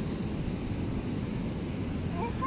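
Wind buffeting the phone's microphone on an open beach: a steady low rumble.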